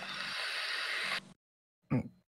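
Steady hiss of air noise on a headset microphone over voice chat, cut off suddenly just over a second in, then silence broken by one short blip near the end.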